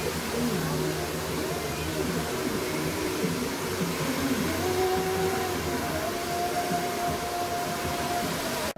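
Handheld hair dryer running steadily, blowing on long hair as it is styled over a round brush.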